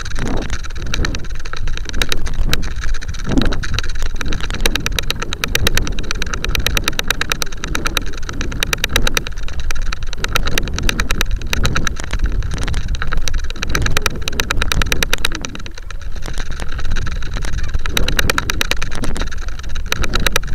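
Wind rushing and buffeting over a model rocket's onboard camera in flight, with a rapid, irregular clicking rattle and a steady high-pitched whine running under it.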